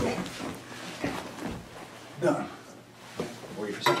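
Two grapplers shifting and scuffing their bodies and clothing on a foam training mat, with a faint low thump about a second and a half in. Short bits of voice come in about two seconds in and again near the end.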